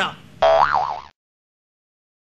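A cartoon-style 'boing' comedy sound effect with a wobbling pitch. It lasts under a second and cuts off abruptly.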